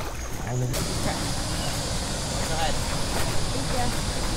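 A steady, even rushing hiss that starts suddenly about a second in, with faint voices under it; a brief voice is heard just before it begins.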